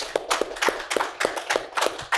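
A small audience applauding, with separate hand claps heard distinctly.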